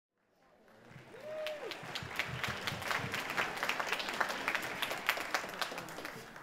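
Audience applause: many hands clapping, fading in over the first second and then holding steady.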